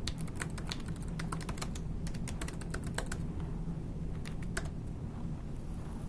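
Typing on a computer keyboard: a quick run of keystrokes for about three seconds, then a few more keystrokes a little after four seconds in, over a low steady background hum.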